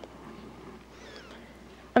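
Quiet room tone, with a faint high-pitched sound gliding downward about a second in.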